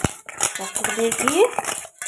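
Metal bangles and fingers clinking and scraping against a stainless steel bowl as food is mixed by hand, a run of quick light clinks, with a woman's voice over it.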